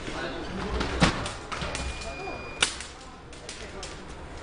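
Two sharp cracks, about a second and a half apart, with lighter clicks around them, and a steady high electronic beep of under a second that cuts off at the second crack.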